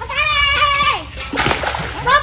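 A child's long, high-pitched call held for about a second, followed by a short splash as a fishing net is dragged through shallow pond water.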